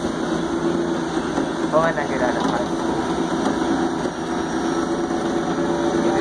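Engine of a Crown Supercoach Series 2 school bus running with a steady hum, heard from inside the passenger cabin, with brief faint voices over it about two seconds in.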